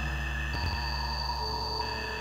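VCV Rack software modular synthesizer playing an ambient drone: layered sustained tones over a deep low hum. A new high tone enters about half a second in, with a brief low thump, and another mid tone joins about a second and a half in.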